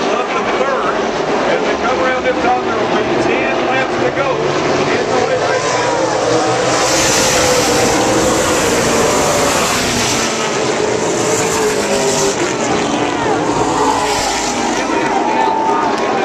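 Pack of late-model stock cars racing around the oval, engines running at speed with their pitch wavering as they pass; the car noise swells from about seven seconds in and eases off near the end.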